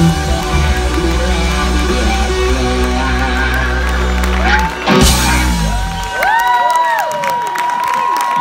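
A live rock band holds a final sustained chord that ends with a sharp closing hit about five seconds in, then the audience whoops and cheers, with clapping starting near the end.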